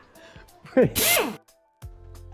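A man's voice lets out a short, loud exclamation that falls in pitch, with a breathy hiss on top, about a second in. After a brief silence, background music comes in near the end.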